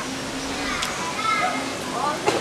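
Quieter talking voices over a steady background hiss, in a pause between louder stretches of speech.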